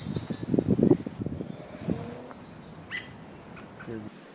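Small birds chirping in short high calls, a few times across the clip. Loud rustling and footfalls through undergrowth in the first second, fading after.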